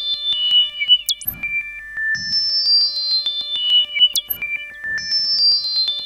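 Modular synthesizer playing a looping electronic pattern: pure whistle-like tones stepping down in pitch, each run ending in a fast rising chirp and short low thuds, repeating about every three seconds.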